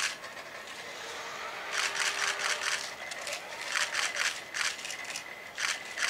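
Kawada HRP-4 humanoid robot's electric joint actuators whirring and rasping in short bursts as it raises its arms out to the sides, with a faint steady whine in the second half.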